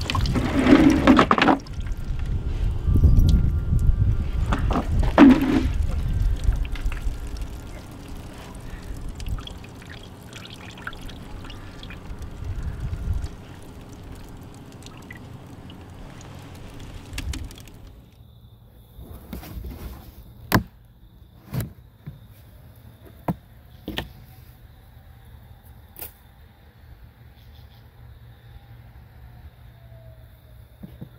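Water splashing and dripping as handfuls of drowned yellow jackets and wet nest debris are lifted out of a shop-vac canister half full of water. In the quieter second half come a few separate sharp taps.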